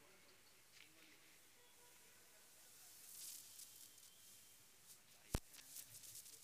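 Near silence: faint background noise, with a short hiss about three seconds in and a single sharp click a little past five seconds.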